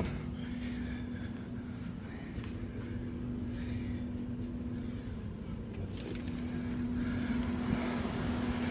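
A steady low hum over a low rumble, the sound of machinery or distant road traffic, with no sharp knocks or clicks.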